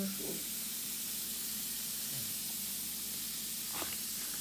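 Steady fizzing hiss of an LOL Pearl Surprise toy's effervescent outer shell dissolving in water.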